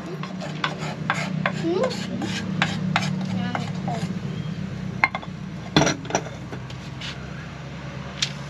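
Utensils scraping and stirring in a small saucepan of melted sugar for dalgona candy: a quick run of short scrapes, then two sharp knocks about halfway through as the pan is handled, over a low steady hum.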